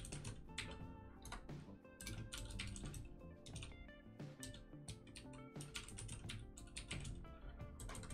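Typing on a computer keyboard: quick bursts of key clicks with short pauses between them, over soft background music.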